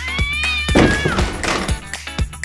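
Background music with a steady beat, over which a cat meow sound effect rises and then falls in pitch over about a second.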